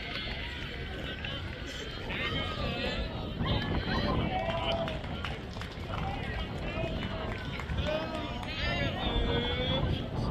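Several voices of players and onlookers calling out and chattering across a baseball field, too far off to make out words, over a low rumble.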